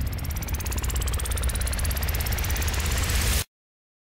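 An engine revving up, a whine climbing steadily in pitch over a fast, even pulsing rumble, cut off abruptly about three and a half seconds in.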